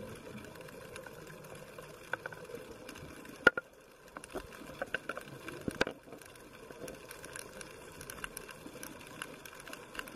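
Underwater ambience picked up through a camera housing: a steady low hiss with scattered sharp clicks and crackles, two of them louder, one about a third of the way in and one a little past the middle.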